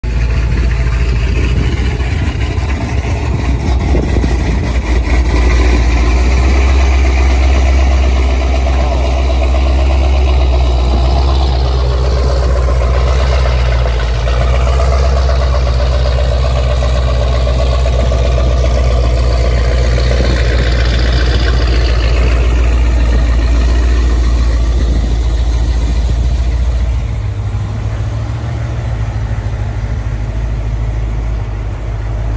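Modified Jeep Grand Cherokee Trackhawk's supercharged V8 running at low speed with a loud, steady, deep exhaust note. Higher tones rise and fall twice around the middle, and the deep note drops off near the end.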